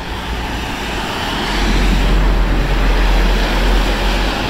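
Road traffic on a wet road, with a tanker lorry passing close: its engine rumble and tyre noise build up about a second and a half in and stay loud.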